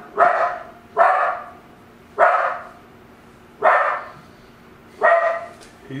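A dog barking, five single barks spaced a second or so apart.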